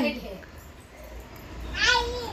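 A child's short, high-pitched, meow-like squeal near the end, after the tail of a voice at the start.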